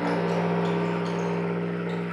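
A loud, steady low drone of sustained tones with overtones, held without change: part of free-improvised live music.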